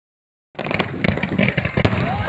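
Silence, then about half a second in a fireworks display cuts in loudly: a steady low rumble of bursts with dense crackling and popping.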